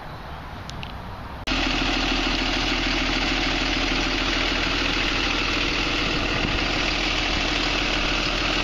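Quiet outdoor background, then about one and a half seconds in a tourist trolley bus's engine sets in suddenly, idling steadily up close with a constant low hum while its door stands open for boarding.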